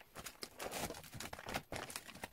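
Clear plastic binder pocket pages and a sleeved photocard rustling and crinkling in the hands as the pages are turned, in several irregular bursts that are strongest in the middle.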